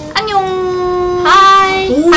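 Young women's voices calling out a long, drawn-out sing-song greeting to viewers, held on one high note for about a second, then bending up in pitch.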